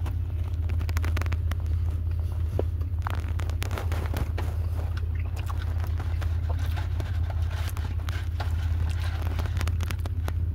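Close-up chewing of a chicken sandwich, with wet mouth clicks and smacks, over a steady low hum.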